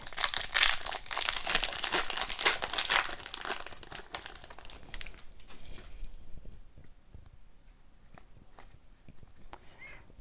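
Foil wrapper of a hockey card pack being torn open and crinkled for the first four or five seconds. It then gives way to quieter flicks and taps of the cards being handled and shuffled through.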